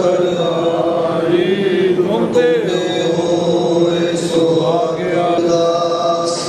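Sikh devotional chanting: voices intoning a slow melodic line with long held notes and only a few short breaks.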